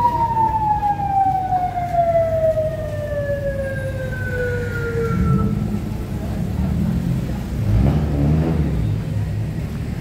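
A siren winding down: one long tone that falls steadily in pitch and fades out about halfway through. Under it is a steady rumble of street traffic, which swells briefly near the end.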